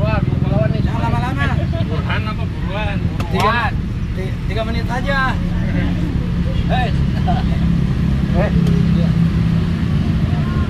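Indistinct voices talking in the background over a steady, low mechanical rumble like an engine running nearby.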